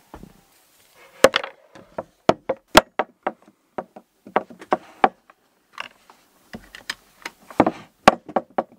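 An irregular series of short clicks and knocks as a FireWire cable is swapped: connector plugs pulled and pushed in, the small Apogee Duet audio interface handled and set down on a wooden desk.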